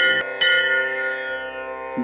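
Two bell-like chime strikes about half a second apart in a devotional song's accompaniment, their ringing tones fading out over the following second and a half.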